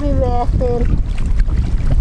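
Steady wind rumble on the microphone over small waves washing against shoreline rocks, with a short spoken phrase at the start.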